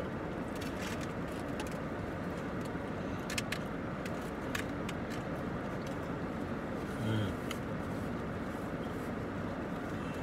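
Steady low hum inside a car cabin, the car idling, with a few short light clicks from eating around the middle and a brief closed-mouth "mm" about seven seconds in.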